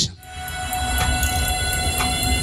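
TV game-show score-reveal sound effect: a held electronic chord with a steady tick about four times a second and a low rumble building underneath, playing while the contestant's marks are revealed.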